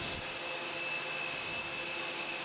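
Steady airport-ramp turbine noise: an even rush with a thin, high whine held on one note.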